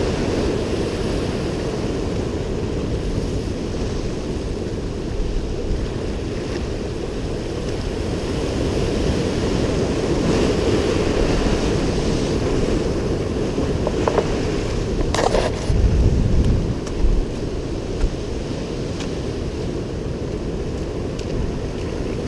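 Surf washing over rocks with wind buffeting the microphone, a steady rush; about two-thirds of the way through it swells louder for a couple of seconds, with a few sharp knocks.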